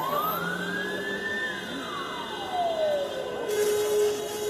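Police siren giving one slow wail. It rises in pitch for about a second and a half, then falls back and settles on a steady low tone near the end.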